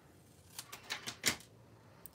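Small paper snips cutting a strip of cardstock: a few short, crisp snips close together around the middle.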